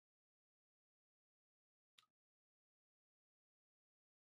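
Near silence: the sound track is muted, with only a very faint brief tick about two seconds in.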